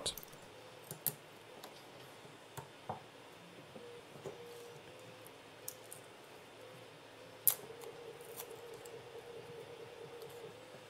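Faint handling sounds of an 18650 lithium-ion battery pack as tape is peeled off its thermistor: scattered small clicks and taps, the loudest a sharp click about seven and a half seconds in. A faint steady hum sits underneath from about four seconds on.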